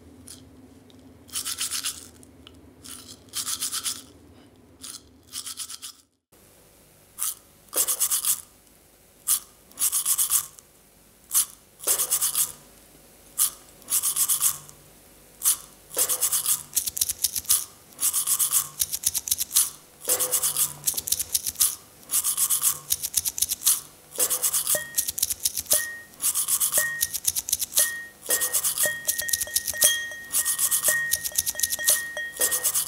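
Toothbrush bristles scrubbing teeth close up on a microphone, in short rhythmic strokes that settle into an even, repeating beat. Near the end a short high tone joins in time with the strokes.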